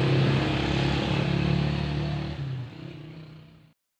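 Steady engine hum, fading out over the last second or so and cutting to silence just before the end.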